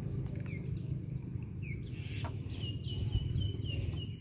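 A bird calling: a few scattered chirps, then a quick run of about six short, falling notes near the end, over a steady low rumble.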